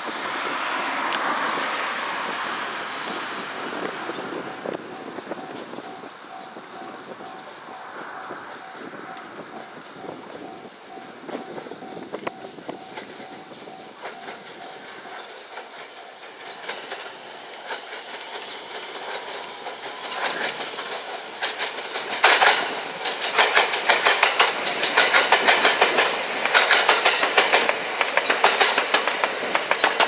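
JR West 227 series electric train running slowly past under a 25 km/h speed restriction. A softer running noise as it approaches gives way, about two-thirds of the way through, to a rapid run of wheel clicks over the rail joints as the cars pass close by, the loudest part.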